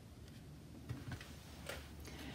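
A few faint soft ticks from a hand moving on and off a card on a tabletop, about a second in and again near the end.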